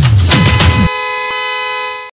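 Electronic music with a deep, regular kick drum that stops abruptly a little under a second in. It gives way to a long, loud, held horn blast of several steady tones, which fades at the very end. This is the closing sting of a TV programme's title jingle.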